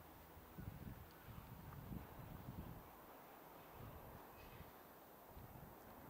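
Near silence: faint outdoor background with a few soft low thumps, mostly in the first half.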